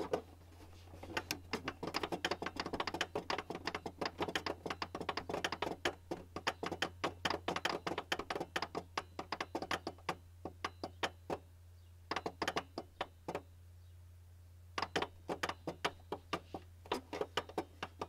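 Fingertips tapping and drumming on the plastic casing of a Canon all-in-one printer, in quick irregular runs of taps broken by a couple of short pauses, over a steady low hum.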